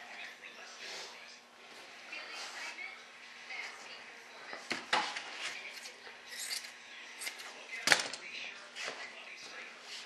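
Rustling and snipping of hand work trimming the wet fibreglass cloth along the edge of a composite tail part, with a sharp click about 5 s in and a louder one about 8 s in, over a faint steady hum.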